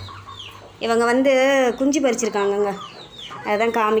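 Chickens calling: a long, wavering call about a second in, a shorter one after it, and another starting near the end.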